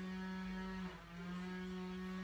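A steady low hum held on one unchanging pitch, dropping out briefly about a second in and then resuming.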